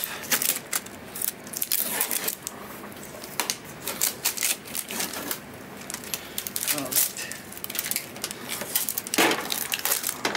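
Protective tape being peeled off a projector's plastic casing: a run of crackles, clicks and small rips, with a louder rip about nine seconds in.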